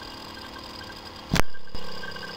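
A single short thump about one and a half seconds in, fading quickly, over a faint steady low hum.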